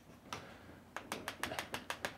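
Chalk on a blackboard: one scratchy stroke, then from about a second in a quick run of sharp taps, about seven a second, as small dots and marks are dabbed onto the board.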